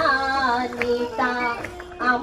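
A woman singing a Christian devotional song through the rally's loudspeakers, holding long, steady notes.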